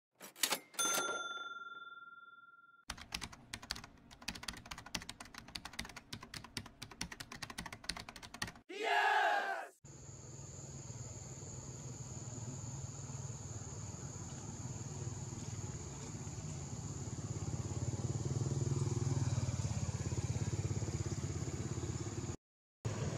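Intro sound effects: a click and a ringing chime, then a fast run of typewriter-like clicks and a short swoosh. From about ten seconds in, a steady outdoor background follows, with a low rumble and a high, thin, steady whine.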